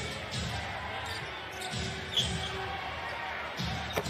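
A basketball being dribbled on a hardwood court, a low thud about every half second, over steady arena crowd noise.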